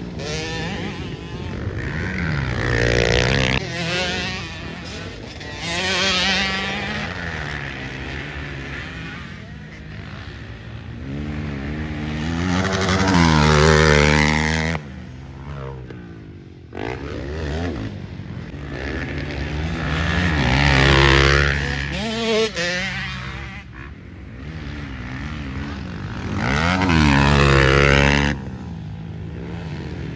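Motocross dirt bike engines revving hard and easing off again and again as riders climb the track and take jumps, the pitch climbing with each rev and dropping as the throttle closes. The sound breaks off abruptly several times as one shot gives way to the next.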